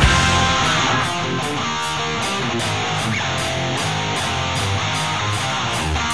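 Rock song led by guitar with a steady high beat; the louder full-band passage drops to a quieter guitar section about a second in.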